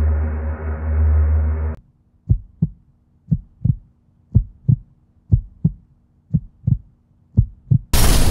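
A low droning music chord cuts off suddenly about two seconds in, followed by a heartbeat sound effect: six double thumps, lub-dub, about one a second.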